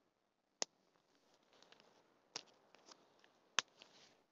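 Faint rustling of dry leaf litter and tarp fabric as the hammock's fly sheet is pulled into place and walked around, with three sharp clicks: one just under a second in, one a little past halfway, and one near the end.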